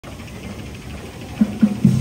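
Marching band music, faint at first, then loud from about one and a half seconds in with short low notes in a steady beat.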